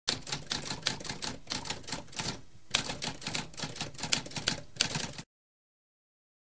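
Typewriter typing in a rapid run of key strikes, with a short pause about two and a half seconds in. The typing then resumes and stops abruptly a little after five seconds.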